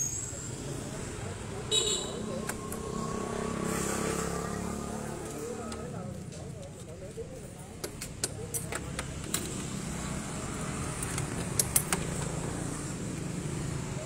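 A series of sharp clicks and rattles as a Suzuki Sport 120 motorcycle's seat is unlatched and lifted, over a low steady background hum.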